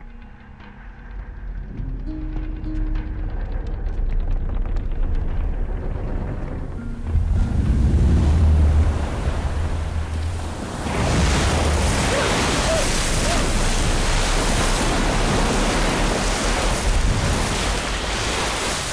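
Tense music under a low rumble that swells about seven seconds in, then a loud, steady rush of surging water and waves from about eleven seconds in.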